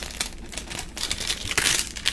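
Crinkling and rustling as fingers handle a cardboard bronzer sample card and its thin plastic film, with a louder rustle near the end.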